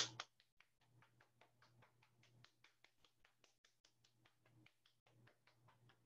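Faint, rapid slaps of an open hand patting up and down a forearm, about five or six a second.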